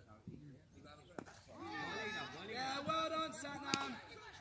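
A cricket bat cracks against the ball about a second in, then several players shout loudly over one another, with another sharp knock near the end.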